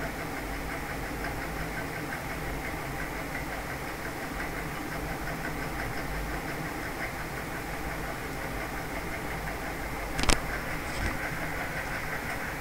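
Steady low background hum and hiss, with one sharp click about ten seconds in.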